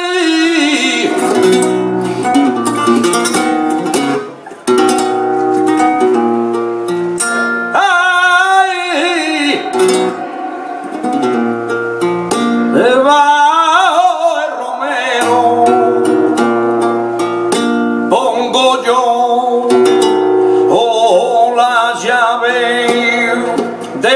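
Flamenco seguiriya: a Spanish guitar plays the accompaniment with strummed chords while a male cantaor sings long, wavering melismatic phrases, coming in again about halfway through and near the end.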